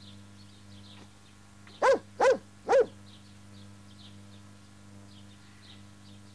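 A dog barking three times in quick succession about two seconds in, over a steady low hum.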